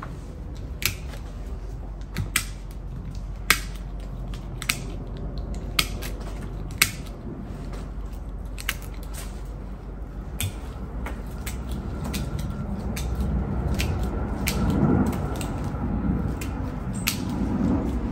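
Bonsai scissors snipping cedar twigs as the branches are thinned. About a dozen sharp snips come irregularly, a second or so apart.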